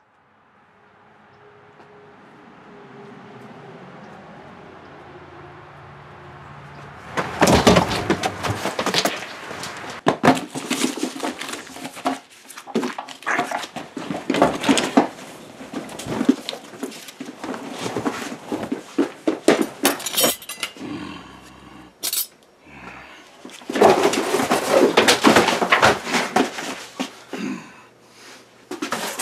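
Hard objects clattering and knocking in rapid, irregular bursts, starting about a quarter of the way in after a faint rising hiss.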